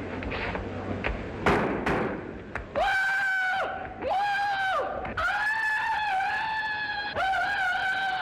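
A man giving a Tarzan yell: a run of held, high-pitched cries broken into four or five stretches, starting about three seconds in. A few sharp knocks come just before it.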